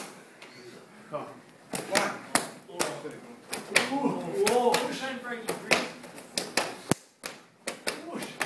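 Bare-fist punches landing one after another on a man's torso through a karate gi, short slapping hits at roughly two a second that start about two seconds in.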